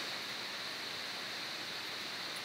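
Steady hiss of the recording's microphone background noise, with no other sound.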